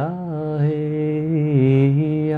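A man chanting a long held 'ya' vowel in a low voice, the note sustained without a break and stepping slightly in pitch a couple of times.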